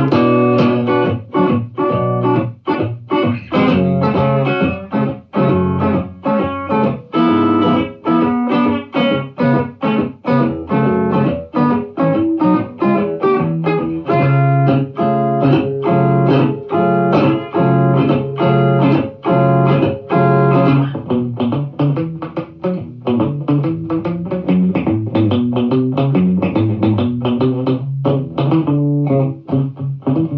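Solo electric guitar, a Telecaster-style solid-body, picking a blues tune in a steady stream of single notes and chords with no other instruments.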